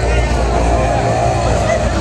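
Fairground din: a steady low mechanical drone from the running thrill ride, with voices mixed in.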